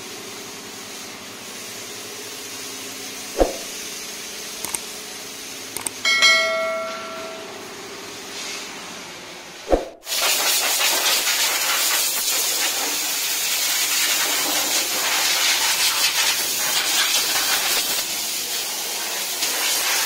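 Motorcycle being washed: a steady hiss of water spray from a hose, with a couple of sharp clicks and a short ringing tone about six seconds in. About halfway through, a much louder, steady pressure-spray hiss takes over.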